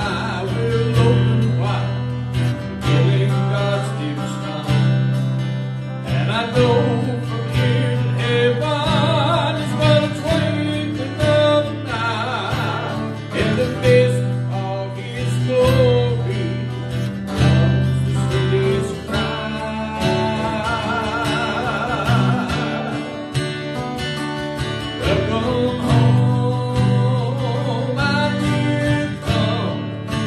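A man singing a gospel song with vibrato, accompanied by strummed acoustic guitar.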